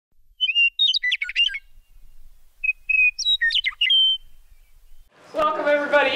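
A songbird singing two short phrases of quick, high chirps and sliding whistled notes, about two seconds apart. A voice starts speaking near the end.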